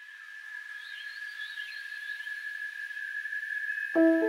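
Night-time forest ambience: a steady, high-pitched insect drone with faint warbling bird calls above it, slowly growing louder.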